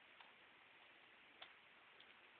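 Near silence: a faint steady hiss with two faint clicks, the second about a second after the first.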